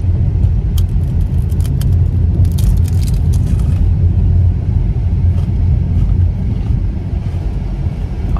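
Steady low rumble of a moving car heard from inside the cabin. Over it, in the first few seconds, a scatter of short crunches as a crispy khanom buang crepe is bitten and chewed.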